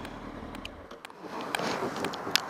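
Honda CB900F Hornet's inline-four engine running low as the motorcycle slows to a stop at the kerb. The low rumble falls away about a second in, and a louder rushing noise follows.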